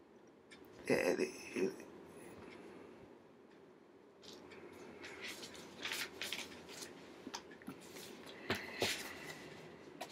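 Paper being handled in the hands, a run of short rustles and crackles through the second half. About a second in there is a brief vocal sound from the person handling it.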